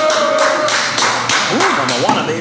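A man's drawn-out exclamation, then several sharp taps and a short grunt as a group downs a round of shots.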